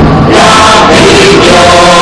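Background music with choral singing in held notes.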